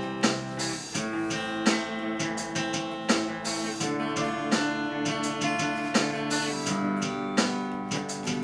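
Instrumental band intro: electric guitar strumming chords over an electronic keyboard, with a sharp percussive accent about every one and a half seconds marking the beat.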